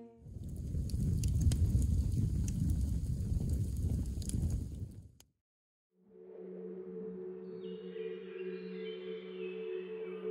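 A line of flames burning on grass: a steady rushing noise with scattered crackles, cutting off suddenly about five seconds in. After a second of silence, ambient music of sustained ringing tones begins, with steady low notes and higher notes entering one after another.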